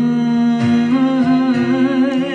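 A woman singing long held notes with vibrato into a handheld microphone, sliding up into the first note, with quiet musical accompaniment underneath.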